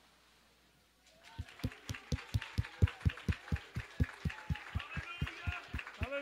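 A congregation in worship: after a quiet first second, steady rhythmic thumping about four beats a second sets in, with voices shouting praise over it near the end.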